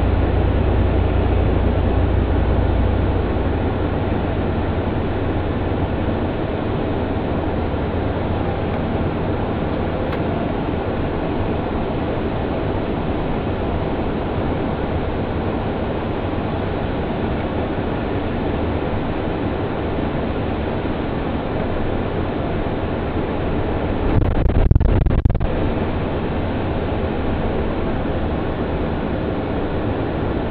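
Steady road and engine noise inside the cab of a charter motor coach driving along a city street, with a heavier low rumble for the first few seconds and a brief louder rumble about five seconds before the end.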